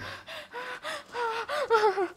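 A woman gasping over and over, short voiced breaths about four a second, in distress.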